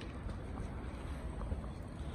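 Low, steady rumble of wind buffeting the microphone.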